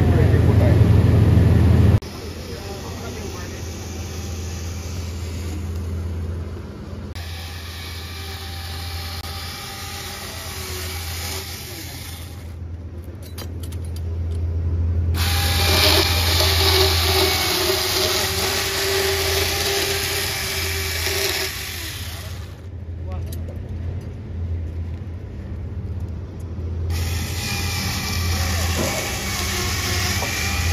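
A large two-man chainsaw, driven by a cable-fed electric motor, running steadily as it cuts crosswise through a log. The sound changes abruptly several times.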